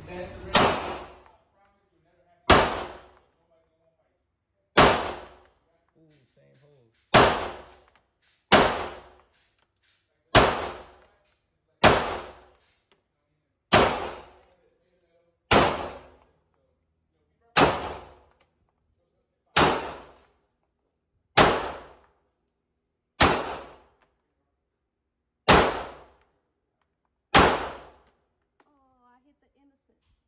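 Glock 19 Gen 5 9mm pistol fired in slow single shots, about fifteen in all, one every one and a half to two seconds. Each shot is a sharp crack with a short echoing tail off the range walls.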